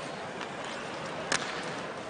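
Ice hockey arena ambience: a steady wash of crowd noise, with one sharp click of a stick striking the puck a little over a second in.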